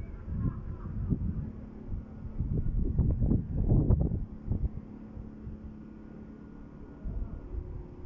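Wind buffeting the microphone of a handheld phone carried along a street, over a steady low hum. It is loudest in a run of gusts about three to four and a half seconds in.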